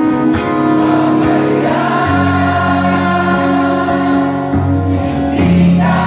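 Live music at a concert: a male singer with acoustic guitar and band, and many voices of the audience singing along.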